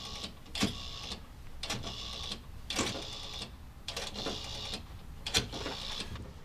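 A telephone being dialled: a run of short mechanical whirring bursts, roughly one a second.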